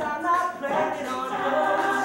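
A mixed men's and women's a cappella group singing a pop song, several voices together in harmony with no instruments.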